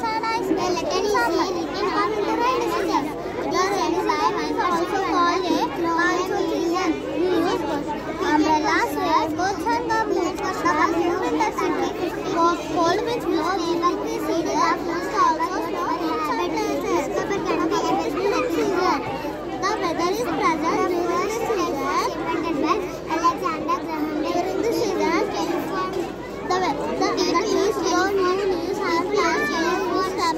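Children's voices: a girl talking close by over a steady babble of many children speaking at once.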